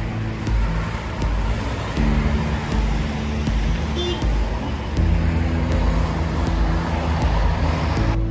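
Road traffic noise from cars on a city street, mixed with background music that has a steady beat.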